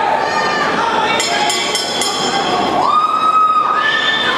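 Crowd of spectators shouting and cheering, many voices calling out at once, with one long held shout about three seconds in.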